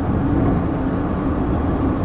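Steady road and engine noise heard inside the cabin of a moving car.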